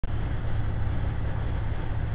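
Steady drone inside the cab of an International heavy truck cruising at highway speed: engine and road noise, with a low hum.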